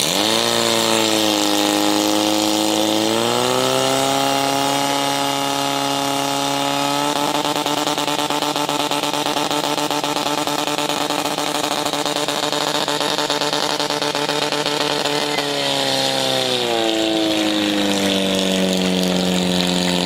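Portable fire pump's engine revving up in two or three steps to high speed and running there while it drives water through the hose lines to the target nozzles. Its pitch then drops in steps to a lower steady speed near the end.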